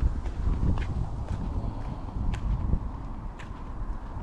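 Footsteps on a path, a sharp step every half second to a second, over a low rumble of wind on the microphone.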